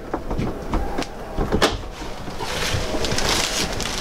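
A wooden wall-cabinet Murphy bed being pulled down. There are a few knocks in the first two seconds, the sharpest about a second and a half in, then a longer rustle as the plastic-wrapped mattress swings out.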